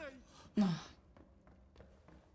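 A woman's short voiced sigh, a breathy exhale falling in pitch, about half a second in.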